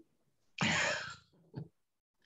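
A person clearing their throat once, a short rough burst, followed by a faint click.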